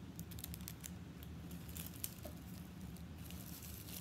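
Small clear plastic baggie of stickers crinkling as it is handled. There are scattered light clicks and rustles, most of them in the first second.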